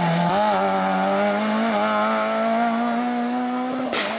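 Rally car engine held at high revs under hard throttle on a gravel stage: a loud, steady engine note that wavers and creeps slightly higher in pitch.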